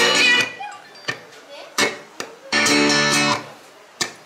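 Guitar music from a car stereo head unit wired into a portable loudspeaker box, cutting in and out as its controls are worked: one snatch that stops about half a second in, a few clicks, then a second snatch of about a second before it goes quiet again.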